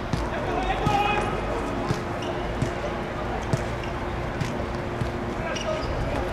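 Sharp thuds of a football being kicked and bouncing on a hard court, roughly one a second, with a player shouting about a second in and again near the end. A steady hum runs underneath.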